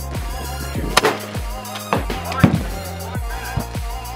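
Background electronic music with a steady kick-drum beat and bass line.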